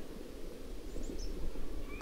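Outdoor ambience: a steady low rumble with a few small bird chirps, short high calls about a second in and a longer thin whistled note near the end.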